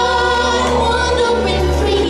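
A song with sung vocals over musical accompaniment, the voices holding long pitched notes.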